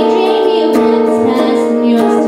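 A woman singing held notes to her own strummed chords on a hollow-body archtop guitar.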